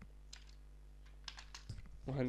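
A few faint keystrokes on a computer keyboard, scattered through the two seconds, over a steady low hum.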